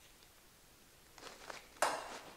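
Two pairs of pliers being handled on a thin aluminum strip: a couple of soft scrapes and clicks a little after a second in, then one sharp clack near the end.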